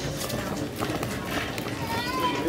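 Shop ambience: background music playing under indistinct voices, with a few light clicks.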